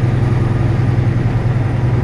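Semi-truck diesel engine running at low speed, heard inside the cab as a steady low drone.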